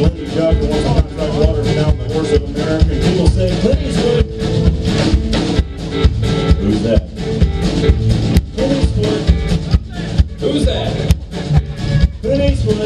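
Live alt-country band playing an instrumental passage: electric guitar, pedal steel guitar and upright bass over a steady drumbeat.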